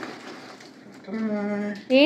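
A person's voice holding one steady, level-pitched hum or sung note for just under a second, starting about a second in after a quiet start.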